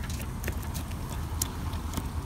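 A knife slicing through a rack of barbecued ribs, with a few irregular sharp clicks and taps of the blade and metal tongs against the cutting board, over a steady low rumble.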